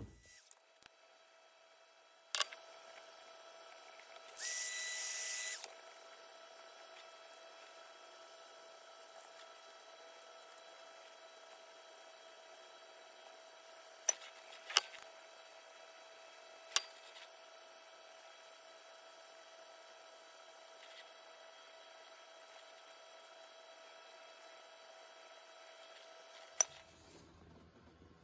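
Faint, steady whine of a small electric heat gun's fan motor running, with a brief louder hiss about four and a half seconds in and a handful of sharp clicks scattered through.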